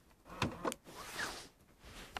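A car's central door locks clicking open as the car is unlocked by its remote key: two short clicks about half a second in.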